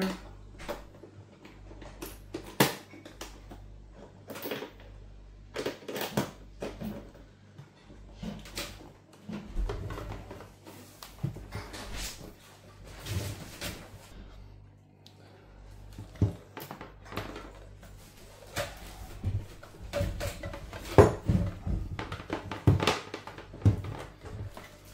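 Handling noise from connecting a battery charger: a metal alligator clamp clipped onto a battery terminal and the charger's cables knocked about on a wooden table, a series of irregular clicks and knocks over a low steady hum.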